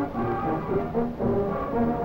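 High school marching band playing, its brass section carrying a melody in long held notes that step up and down in pitch about every half second.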